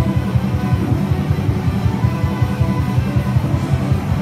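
Live loud rock music: a guitar played through an amplifier over a backing track with drums, with a fast, even, driving pulse in the low end.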